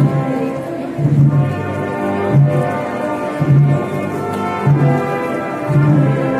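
Wind band of brass and woodwinds playing a slow procession march, with low brass notes marking the beat about once every second.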